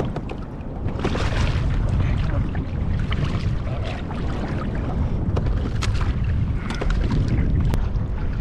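Wind buffeting the microphone over choppy sea, with water slapping against a kayak's hull and a few light clicks.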